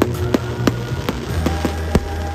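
Music with a deep, steady bass line, over which aerial fireworks crack sharply six or seven times, the loudest near the end.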